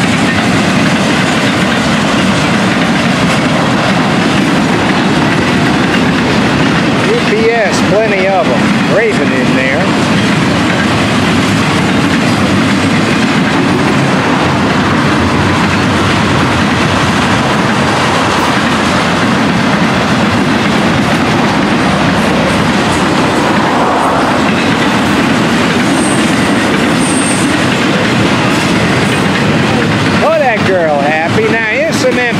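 Florida East Coast Railway intermodal freight train passing close by: a loud, steady rolling noise of loaded freight cars and steel wheels on the rails that keeps up without a break.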